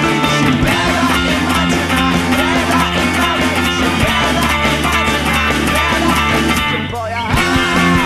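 Fast, driving rock music: layered electric guitar parts on a Fender Road Worn 50's Stratocaster, amplified through a Roland Micro Cube and a Line 6 POD HD500, over a backing of bass and drums. The music breaks off briefly about seven seconds in, then comes back in.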